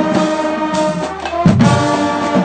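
Marching band playing loud: a brass section of sousaphones, trombones and horns holds full chords over drum hits, with a heavy bass-drum accent about a second and a half in.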